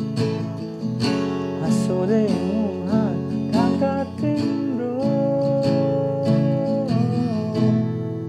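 Acoustic guitar strumming the chords E minor, G and F sharp in a down-up rhythm. A voice sings the melody over it and holds one long note in the second half.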